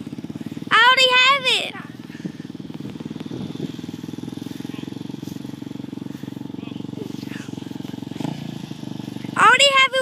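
A Polaris Predator ATV engine running at a steady low drone as the quad drives across the field. Two loud, high-pitched yells from someone close by cut over it, about a second in and again near the end.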